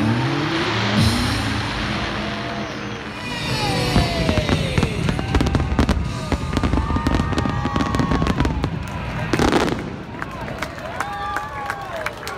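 Fireworks display: a dense run of rapid crackling bangs from about four seconds in until about ten seconds, with one louder burst late on.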